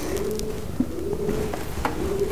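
A bird cooing in low, drawn-out notes, with a couple of faint taps.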